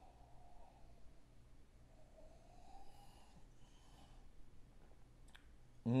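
Faint sipping and mouth sounds of a man tasting a stout from a glass: a few small clicks and soft breaths.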